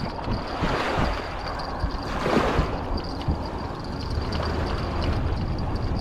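Wind blowing across an action camera's microphone, a steady rush with a low rumble that swells twice in the first three seconds.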